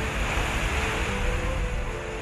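Steady rushing hiss of an erupting geyser's steam and spray, with film score music underneath.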